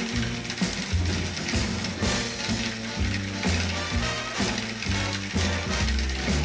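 Battery-powered toy train running on plastic track, its geared motor giving a ratcheting clatter with clicks about twice a second. A tune with shifting low notes plays along with it.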